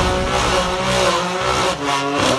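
Car engine held at high revs with the tyres squealing and scrabbling through a burnout.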